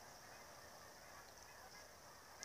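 Faint, distant honking of a flock of geese, barely above near silence.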